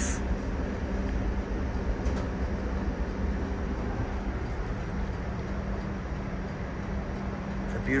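Steady cabin noise inside a TTC Flexity Outlook streetcar: an even low hum with a faint rushing noise behind it.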